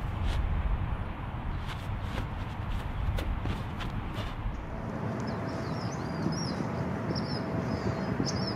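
Wind rumbling on the microphone, with a series of sharp clacks as two short wooden fighting sticks are swung and struck in a martial-arts form. About two-thirds of the way through, the sound changes to birds chirping over a faint steady tone.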